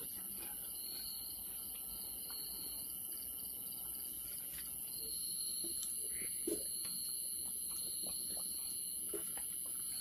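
Night insects trilling steadily in high, pulsing tones, with a few faint clicks from the dining table, the clearest about six and a half seconds in.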